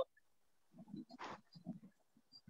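Faint, indistinct murmuring voice sounds with a short breath about a second in, heard over a video-call line, after a near-silent first half-second.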